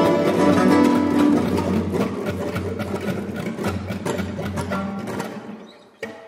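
Ensemble of classical guitars with a Persian setar playing a stream of rapid plucked notes over held bass notes. The music grows gradually quieter through the second half and fades away near the end.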